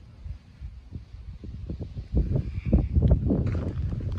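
Low, irregular thumping and rumble on the microphone of a handheld camera that is being moved. The noise grows much louder from about two seconds in.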